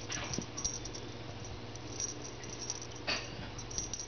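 Kittens playing with a feather wand toy on carpet: brief swishes and rustles with light scuffs and clicks, the clearest swishes just after the start and about three seconds in, over a steady low hum.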